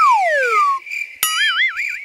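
Cartoon sound effects: a whistle-like tone glides steeply down in pitch and fades out. About a second later, after a click, a wobbling warbly tone rises and falls several times a second.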